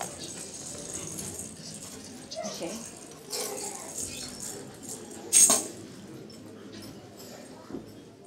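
A hand-held tambourine's metal jingles rattling in short bursts as it is handled, with one loud, sharp shake about five and a half seconds in.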